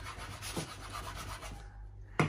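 A serrated knife sawing through a soft chocolate-chip cake on a wooden cutting board: faint rasping strokes that die away near the end as the knife comes free.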